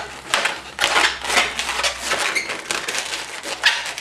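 Latex modelling balloon squeaking and rubbing under the hands as its bubbles are twisted and locked together into a chain: a rapid run of squeaks, with one of the loudest near the end.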